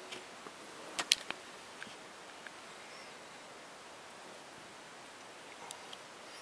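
Quiet room hiss with a short cluster of sharp clicks about a second in and a few faint ticks later.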